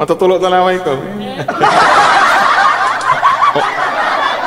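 A voice with drawn-out, gliding pitch, then from about one and a half seconds in, a dense noisy stretch of snickering laughter and chatter.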